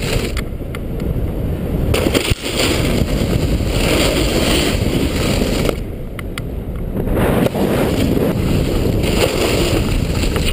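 Loud wind rushing over a moving camera's microphone, mixed with a snowboard scraping and sliding over snow on a big jump. The noise changes abruptly a few times between separate shots.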